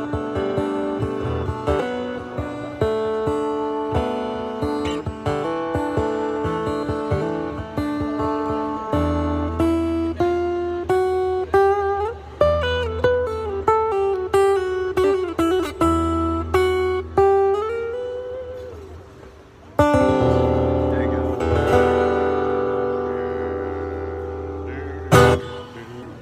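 Acoustic guitar fingerpicking a slow closing passage. From about nine seconds in, a wordless sung line slides up and down in pitch over a low held note. About twenty seconds in a final chord rings out and fades, and a sharp knock comes just before the end.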